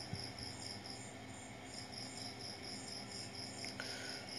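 A cricket chirping steadily in an even high-pitched pulse, about four chirps a second, over a faint low steady hum.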